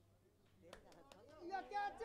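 Faint voices with a couple of sharp ticks about a second in. The voices grow louder near the end.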